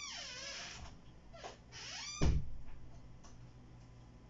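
Squeaky door hinges creaking as an inner door is swung: a long squeal falling steeply in pitch, then a shorter squeal that dips and rises, followed by a thud just after two seconds in.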